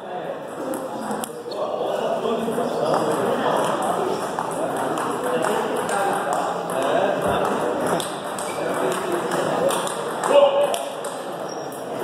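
Table tennis ball being hit back and forth in rallies: a run of sharp, irregular clicks of the celluloid ball off paddles and table tops, echoing in a hall.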